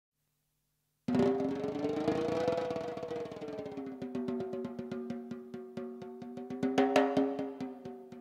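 Ludwig Element drum kit with Ufip cymbals played in quick, dense strokes over a sustained keyboard chord that bends slightly in pitch. It starts abruptly about a second in, after silence, and a loud cymbal crash comes near the end.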